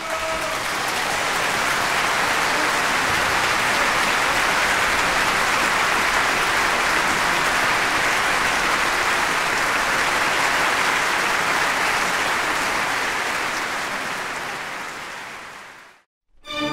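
Concert audience applauding steadily, fading out near the end.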